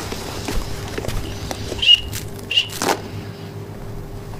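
Plastic squeaky toy hammer squeaking twice, two short high squeaks well under a second apart, among light knocks and rustling.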